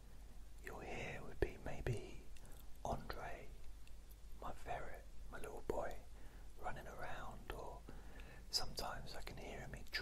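A man whispering in short phrases, with brief pauses between them.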